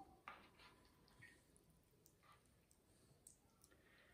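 Near silence, with a few faint, brief clicks as plastic tongs twist spaghetti into a nest on a ceramic plate.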